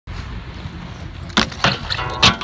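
Inline skate wheels rolling on concrete with a low rumble, then two sharp knocks about a second and a half in as the skates come down on the ledge.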